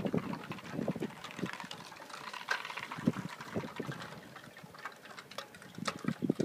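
Sandstorm wind blowing against the microphone: an uneven hiss broken by short gusts and buffets.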